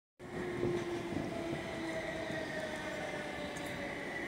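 Class 458 electric multiple unit pulling out, its traction equipment giving a steady electric whine of several tones over a rumble, one tone sinking slightly in pitch.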